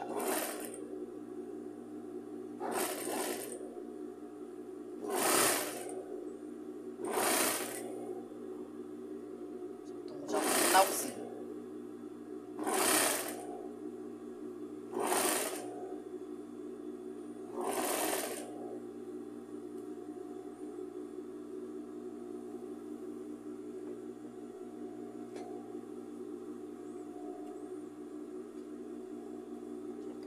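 Sewing machine stitching in eight short runs of about a second each through thick ribbed fabric, over a steady hum; the runs stop after about eighteen seconds, leaving only the hum.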